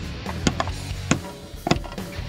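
Hammer tapping a new seal into the front of a Chrysler 727 TorqueFlite automatic transmission: three sharp taps about half a second apart, driving the lubed seal in square.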